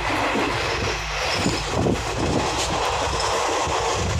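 Running noise of a moving Garib Rath Express passenger train, heard inside a 3AC coach near the vestibule: a steady rumble and rattle of the carriage, with a few knocks from the wheels and running gear about halfway through.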